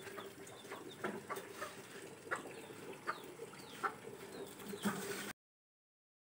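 Faint bird calls, scattered short chirps and clucks, some falling in pitch, over a steady low hum. The sound cuts off suddenly a little after five seconds in.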